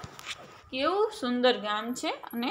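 A voice reading aloud in Gujarati, starting under a second in. Before it, a sharp click and a short, rasping hiss.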